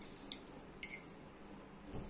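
Thin stirrer clinking against a glass tumbler of coloured water while it is stirred: two light clinks about a third of a second and just under a second in, the second one ringing briefly.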